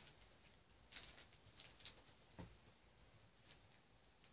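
Faint, short rustles and soft taps of a Pokémon trading card and plastic card sleeve being handled, a few seconds apart, with near silence between them.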